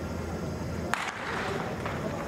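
A starting gun fired once, about a second in, setting off a sprint hurdles race, with a short echo after the crack.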